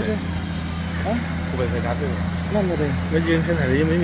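Steady low hum of excavator diesel engines working in a landfill pit, with a person's wavering voice over it.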